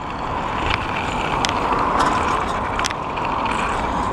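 Riding a bicycle on asphalt: a steady rush of wind on the microphone mixed with tyre noise, with a few light clicks.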